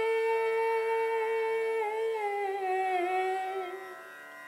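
A single voice holding one long sung note, hummed or sung on an open vowel, steady at first, then sliding down a little about two seconds in and fading out near the end.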